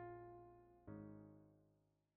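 Quiet background piano music: two soft sustained chords, the second about a second in, each slowly dying away.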